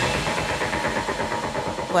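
The tail of a TV news transition sting: a low rumble under held synthesizer tones, slowly dying away.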